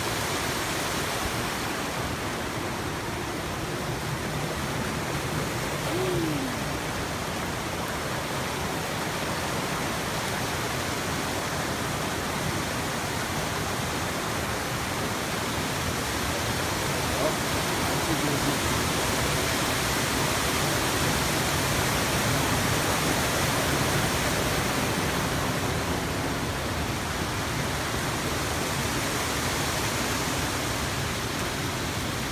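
Water from a small waterfall rushing steadily down rock slabs into a pool.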